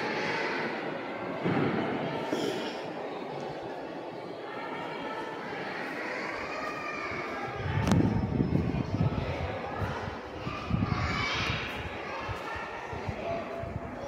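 Indistinct background voices, with bursts of low rumbling, the loudest about eight seconds in and another around eleven seconds.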